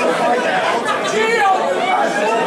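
Crowd chatter: many voices talking over one another at once, steady throughout.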